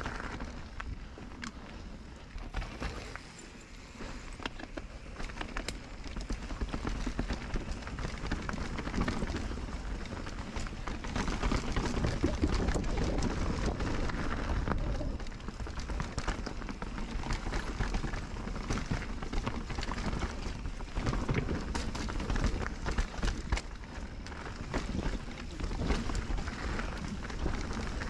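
Norco Sight mountain bike riding fast down a dirt and rocky singletrack: tyres crunching over gravel and roots, with a steady rattle of small knocks from the bike. It is quieter for the first few seconds, then louder as the bike picks up speed.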